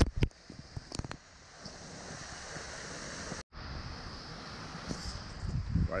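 Steady outdoor wind noise, with wind on the microphone, and a few sharp handling clicks in the first second. The sound drops out for an instant about three and a half seconds in.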